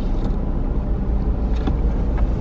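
Car engine running, a low steady rumble heard from inside the cabin, with a few faint clicks.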